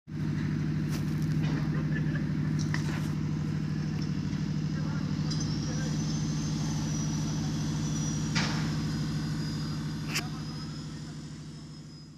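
Steady low machine hum, fading out near the end. A faint high whistle joins about five seconds in, along with a few light clicks.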